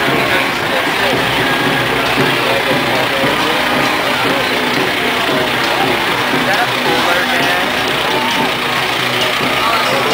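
Truck engine running as a decorated float truck rolls slowly past, under steady crowd chatter and voices.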